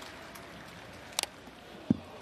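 Ballpark crowd murmuring steadily, with one sharp crack at home plate about a second in as the pitch arrives, and a short dull thump near the end.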